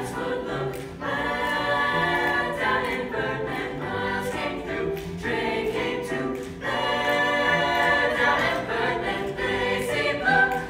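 Youth choir singing in sustained harmony with piano accompaniment. The phrases break briefly about a second in and again between six and seven seconds.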